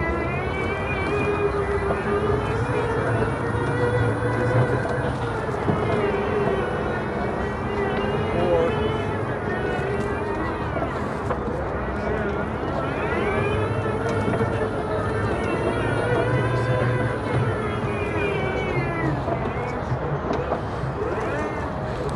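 Electric motors of a STIHL RZA 760 battery-powered zero-turn mower whining as it drives, the pitch rising and falling in slow sweeps as it speeds up and slows down, over background voices.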